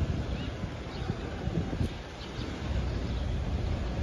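Wind buffeting the microphone over the low, uneven hum of slow car traffic close by.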